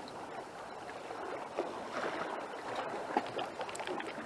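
Seawater lapping and sloshing at the shore in a steady wash, with a couple of small clicks.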